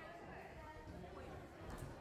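Faint, indistinct background chatter of people talking in a large indoor hall.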